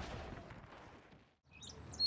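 Faint background hiss fading out to a moment of silence, then small birds chirping from about a second and a half in.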